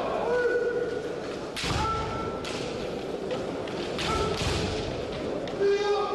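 Kendo fighters shouting kiai, several long held cries, over sharp knocks of bamboo shinai strikes and foot stamps.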